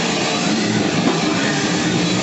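Live death metal band playing at full volume: distorted guitars and a drum kit in one dense, steady wall of sound.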